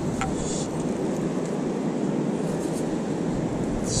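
Steady rumble of wind and surf on the microphone, with a short hiss of sand being shaken through a stainless steel sand scoop's mesh less than a second in.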